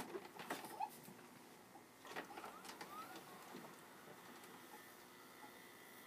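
Faint mechanical clicks and a brief whir from a VCR as it goes from stop to play and threads the tape, with a short rising tone about two to three seconds in.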